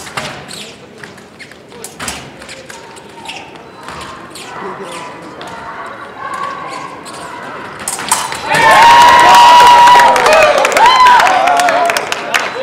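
Épée fencing footwork and blade contact: short knocks, stamps and clicks. About three and a half seconds from the end comes a loud, long shout, then more wavering yelling as a touch is scored.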